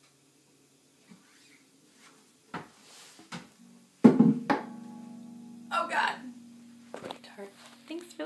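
Acoustic guitar being handled and set down: a couple of light knocks on the body, then a sharp thump about four seconds in with the strings left ringing on afterwards. A short burst of voice follows a couple of seconds later.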